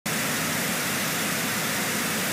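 TV static sound effect: a steady hiss of white noise that cuts in at once and holds level, like a television that has lost its signal.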